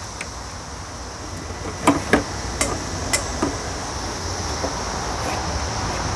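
A few sharp metallic clicks and clinks, clustered about two to three and a half seconds in, as a car's windshield wiper arm is loosened and worked off its spindle by hand.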